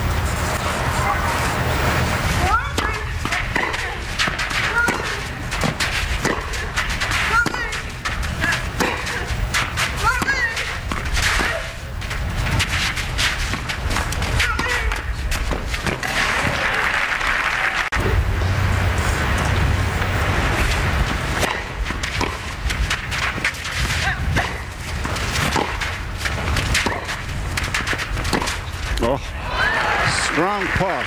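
Tennis rally: racquets striking the ball back and forth, heard as repeated sharp hits over a steady background of crowd and broadcast noise.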